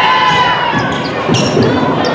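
Indoor volleyball rally on a hardwood gym court: sneakers squeak in several curved, rising-and-falling squeals over the noise of a crowd in the echoing gym, with a sharp tap about two-thirds of the way through.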